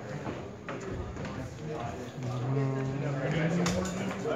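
A few sharp knocks and steps from a longsword bout under the murmur of onlookers' voices. Near the end a voice holds one long, slowly rising note.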